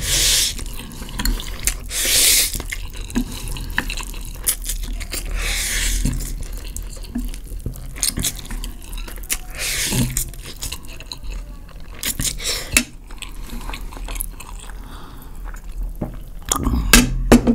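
Wet slurps of spicy instant noodles being drawn up from chopsticks and eaten, a loud one at the start and several more over the following seconds, with light clicks of chopsticks and a fork against the ceramic plate.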